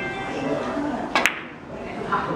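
Carom billiards shot: a sharp double click of cue tip and balls striking, just over a second in, over the low chatter of onlookers.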